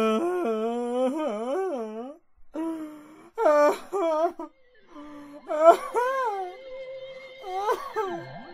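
Wordless wailing vocals in long, wavering, sliding phrases broken by short gaps, part of a homemade experimental noise-music track. About halfway through, a steady held note joins underneath.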